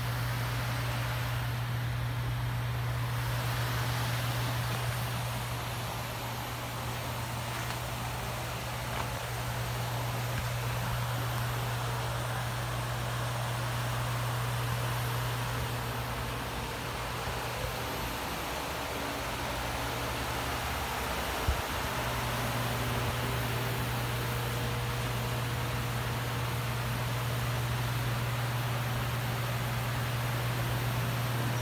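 GMC Yukon's V8 engine idling steadily, a low even hum with a constant note, a little fainter for a few seconds about two-thirds of the way through. One sharp click comes just after that dip.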